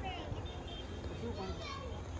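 Children's voices at a distance, calling and talking as they play, with a steady low rumble underneath.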